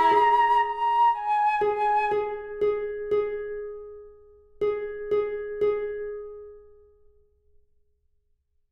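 Flute holding a final note that ends about a second in, followed by a harp plucking one repeated note, four times, then after a short pause three more times, each ringing and decaying, as the movement fades out to silence.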